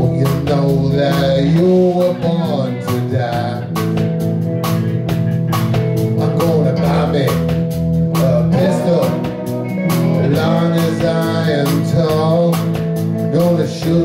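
A live blues band playing an instrumental passage: electric guitars, electric bass and a drum kit with regular cymbal strikes, under a lead line of bending notes.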